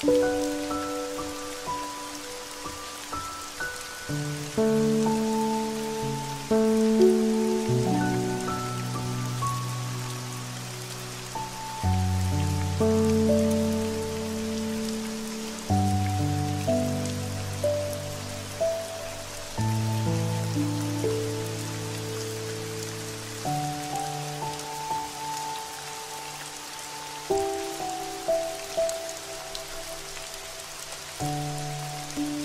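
Steady rain falling, mixed with slow, calm music: sustained chords that change about every four seconds, with a melody of single notes above them.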